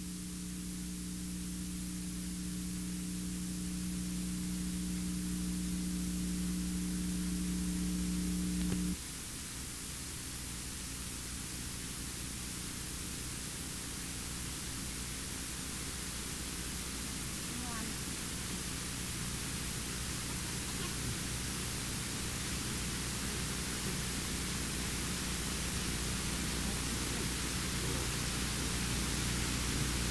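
Steady hiss of old tape noise with a low electrical hum under it; a louder two-note hum cuts off suddenly about nine seconds in, leaving the hiss and a fainter hum.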